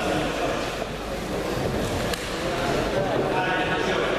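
Several people's voices talking and calling out at once in a sports hall, a steady mix of chatter with no single clear speaker.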